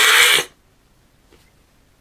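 Caracal hissing: one loud, drawn-out hiss that cuts off sharply about half a second in.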